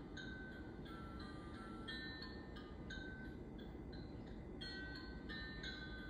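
Soft background music of bell-like mallet or chime notes, a few a second, over a low steady rumble.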